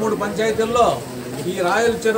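A man speaking continuously in Telugu, with no clear sound besides the voice.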